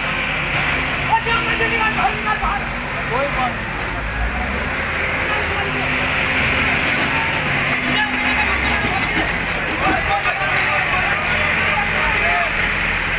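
Diesel engines of several backhoe loaders running steadily, mixed with the murmur of people's voices.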